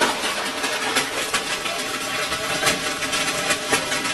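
Heavy hail falling, a dense, steady clatter of many hailstones striking hard surfaces.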